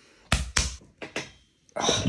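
A few short knocks and clunks in the first second, then a man's pained groan, 'Oh, ah', near the end as he pushes into a deep leg-split stretch.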